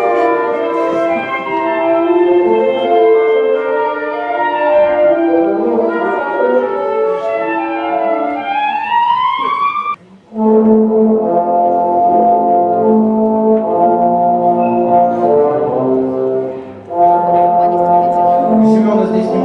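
Brass ensemble playing in chords: a moving passage that rises into an upward glide, a brief break about ten seconds in, then held chords with another short break near the end.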